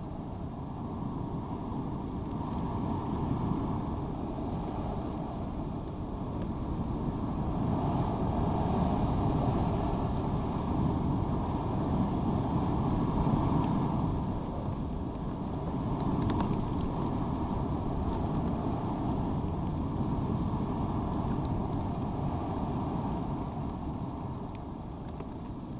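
Low rumble of distant engine noise, swelling about seven seconds in, easing a little after fourteen, then holding, with one faint click partway through.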